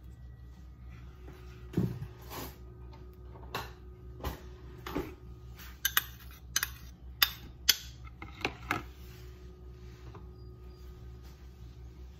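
A metal spoon scraping and tapping against the inside of a small metal bowl, scraping out the last of the melted butter: a string of sharp clinks between about two and nine seconds in. A low steady hum runs underneath.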